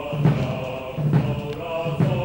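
Opera chorus singing with orchestral accompaniment in a live stage performance, over a regular low beat about once a second.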